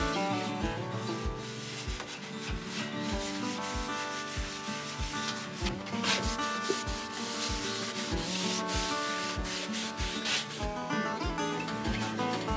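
Background music with a steady beat, over the dry scrubbing of a paper towel rubbed across a small steel wood stove's top and glass door. The scrubbing is strongest about halfway through.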